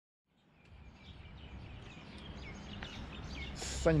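Small birds chirping over a steady low outdoor background rumble, fading in from silence over the first second.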